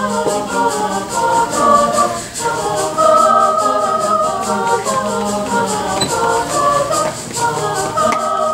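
Mixed-voice concert choir singing a choral piece in full parts, the voices moving together in chords. A quick, steady rhythmic ticking runs underneath the singing.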